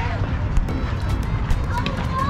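Indistinct voices over a steady low rumble of outdoor noise.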